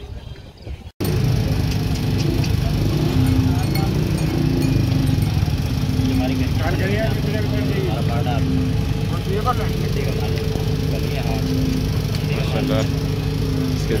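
A steady engine-like drone with people talking over it. The sound breaks off briefly about a second in, then the drone starts abruptly and runs on evenly.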